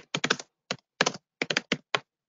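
Typing on a computer keyboard: uneven runs of keystrokes, a few keys at a time, broken by short pauses.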